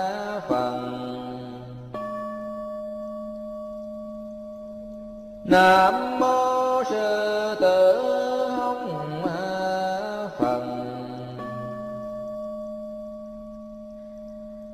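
A Buddhist prayer bowl-bell is struck about two seconds in and rings out slowly over a steady low drone. A chanting voice then sings a long melodic phrase from about a third of the way in. The bell is struck again near the end and rings on.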